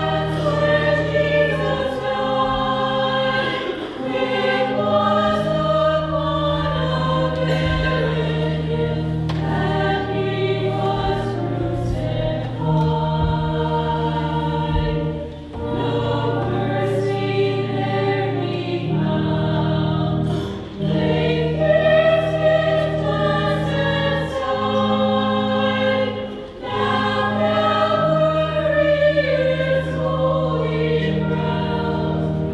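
A hymn sung by a group of voices over held low accompanying notes that change every few seconds, phrase after phrase with short breaths between.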